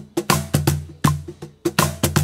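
Artisan Tango Line cajon played with bare hands in a Brazilian xote (forró) groove at 80 BPM. Deep, ringing bass strokes alternate with sharper, brighter strokes in a steady, repeating pattern.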